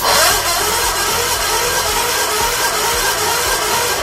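Kohler K532 cast-iron twin engine being cranked over by its starter during a compression test, a loud steady churning with a rhythmic pulse that starts abruptly and stops at the end of the cranking.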